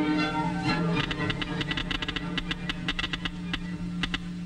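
Orchestral film music fading out about a second in, then a Geiger counter clicking irregularly, several clicks a second, over a steady low hum. The clicks are the sign of radioactive rays reaching the counter.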